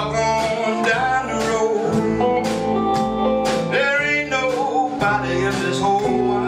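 Live gospel-blues band music: electric and acoustic guitars with bass over a steady beat, with some singing.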